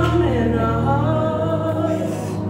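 Youth choir singing a Christmas song, voices sustaining wavering notes over a steady low accompanying note.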